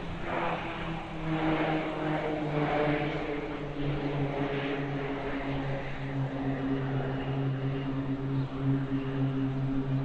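A formation of KT-1B turboprop trainers droning overhead, a steady low propeller hum that drops slightly in pitch a few seconds in. A rushing sound swells and fades over the first half.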